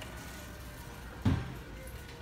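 Large store's steady background hum with faint music. A single sharp thump a little over a second in is the loudest sound.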